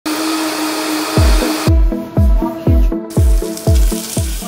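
A countertop blender running, cutting off abruptly about a second and a half in. Under it and after it is background music with a steady bass-drum beat, about two beats a second, starting about a second in.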